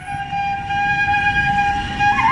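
A transverse flute holding one long, steady note.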